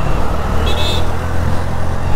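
Steady road and wind noise from a two-wheeler riding through city traffic, with a strong, even low hum throughout and a brief high tone about two-thirds of a second in.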